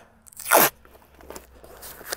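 One short crunch about half a second in as a cardboard sheet and painter's tape are handled, followed by faint rustling.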